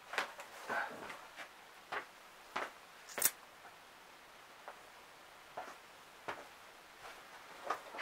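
Scattered faint knocks, clicks and rustles in a small quiet room as a person gets up from a chair and moves about, with one sharp click about three seconds in.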